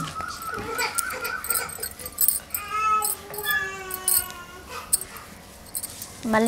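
An animal's high-pitched calls: a wavering call in the first second or so, then a few longer, steadier calls around the middle.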